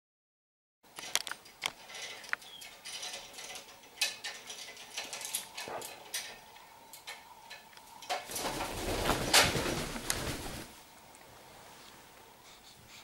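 Blue-fronted Amazon parrots making short chirps among clicks and scratching sounds, starting about a second in. Near the end comes a louder stretch of rustling and scuffling lasting a couple of seconds.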